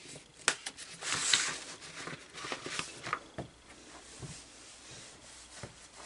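A paper instruction booklet being handled: pages rustling and rubbing under a hand, with a sharp click about half a second in and a louder rustle around a second in.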